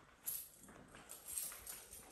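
Faint footsteps on a tiled floor: a few soft taps, well spaced.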